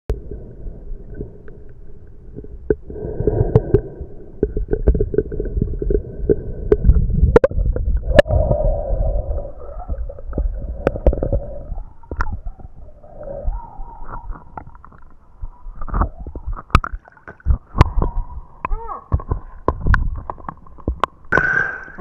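Water sloshing and gurgling around a camera held at the waterline, heard muffled and rumbling, with many sharp clicks and knocks throughout.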